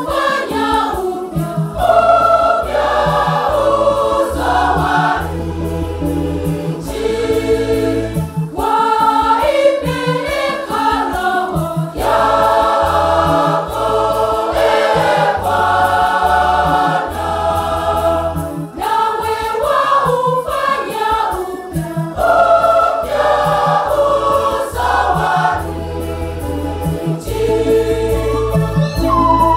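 Church choir of men and women singing a Swahili Catholic hymn, with low bass notes moving underneath in a steady beat.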